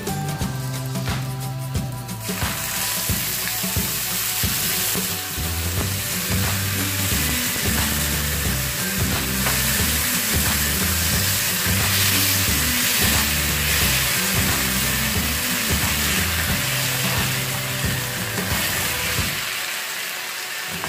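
Chopped tomatoes hitting onions and garlic in a hot frying pan set off a loud sizzle about two seconds in, which keeps going steadily as they cook. Background music plays underneath.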